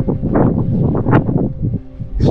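Wind buffeting an action camera's microphone, coming in uneven gusts with a low rumble.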